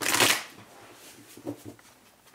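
A tarot deck being shuffled by hand: a loud rush of cards sliding together at the start, then a few soft taps of the cards.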